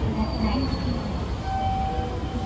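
Train running at the station platform: a steady low rumble with a few brief, thin, high-pitched squeals.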